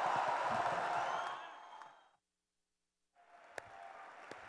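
Audience applause, an even clatter that fades out about halfway through into a moment of dead silence; faint room noise then returns with a single knock.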